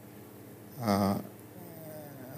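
A man's single short low vocal sound, an unworded murmur, about a second in, with quiet room tone either side.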